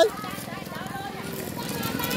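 Children's voices and background chatter, with a brief high rising shout right at the start, over a low steady rumble.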